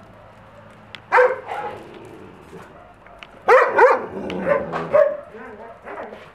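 Dogs barking in play: one bark about a second in, then a quick run of several barks from about three and a half seconds.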